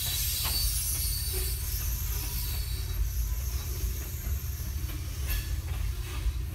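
Freight train's hopper cars rolling slowly past, steel wheels squealing on the rails over a low rumble, with a few sharp clacks about five seconds in as the last car goes by. Heard from inside a car.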